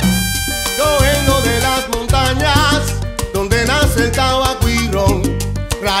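Cuban timba (salsa) band recording: an instrumental passage with a rhythmic bass line, percussion and wavering melodic lines, with the lead singer coming in right at the end.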